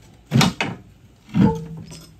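Two loud knocks about a second apart from a steel pry bar levering a heavily loaded wooden pallet up off a black steel pipe roller on a concrete floor.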